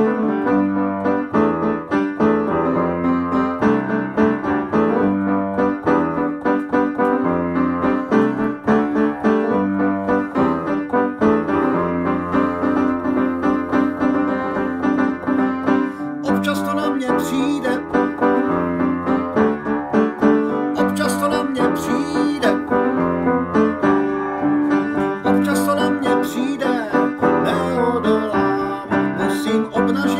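Piano playing a song accompaniment, its chords repeating in a steady pattern; about halfway through, a man's singing voice comes in over it.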